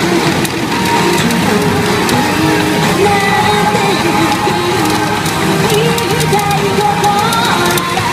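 A pop song with a sung vocal line, played loudly through a pachinko machine's speakers during its jackpot round.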